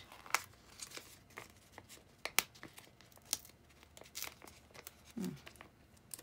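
Thin translucent sticker sheets crinkling and rustling as they are handled, with a scattering of short sharp crackles.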